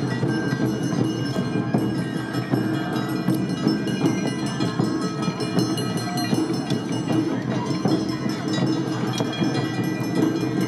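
Awa Odori procession music: the ringing, clanging strokes of brass hand gongs (kane) over drums, playing continuously.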